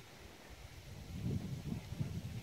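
Low, irregular wind rumble on the microphone, quiet at first and growing louder about a second in.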